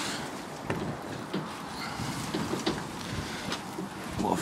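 A greenhouse door being opened and stepped through, with a few scattered knocks and rattles over handling rustle.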